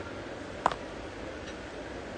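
A single short, sharp click about two-thirds of a second in, over steady low room noise.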